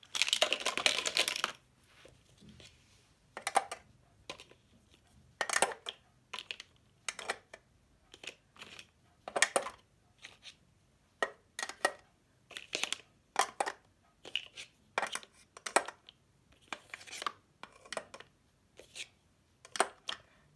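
Plastic Donga Jetty highlighters being set one by one into a clear acrylic compartment organizer: scattered clicks and clatters of plastic on hard plastic. It opens with about a second and a half of rustling.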